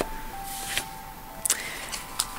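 Tarot cards being handled and shuffled: a brief rustle, then a sharp click about three-quarters of the way through, over soft background music with held tones.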